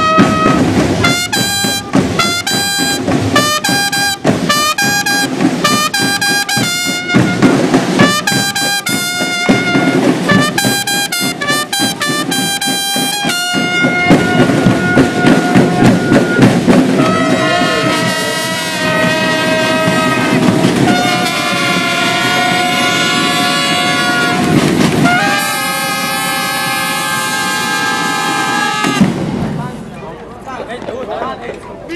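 Marching band's trumpets and snare drums playing a fanfare: short, repeated trumpet phrases over drumbeats for the first half, then long held trumpet chords. The playing stops shortly before the end.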